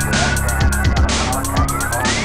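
Chiptune-style keygen music: an electronic track with a steady drum beat under held synth tones. Near the end a synth note glides upward in pitch, a siren-like sweep.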